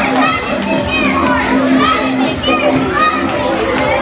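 Many children's voices at once, shouting, squealing and chattering over one another as they skate around a roller rink.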